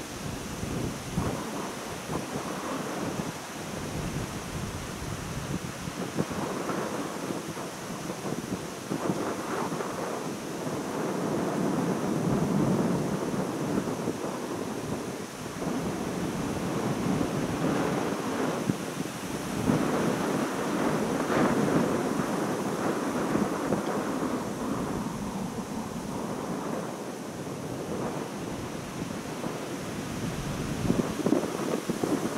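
Wind buffeting the microphone: a rough, rumbling noise that swells and fades in irregular gusts, strongest around the middle and again about two-thirds of the way in.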